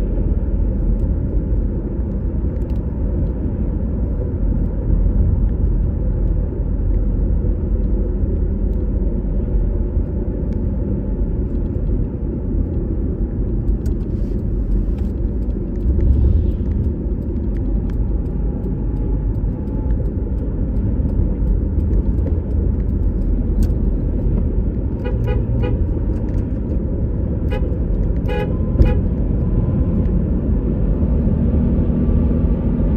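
Steady low road and engine rumble heard from inside a moving vehicle. A few short horn toots come near the end.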